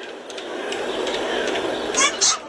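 Rushing jet roar of something flying overhead, growing steadily louder as it approaches.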